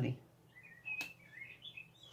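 Faint short bird chirps in the background, a string of small calls that waver in pitch. One light click about a second in as a card is set down on a pile of cards.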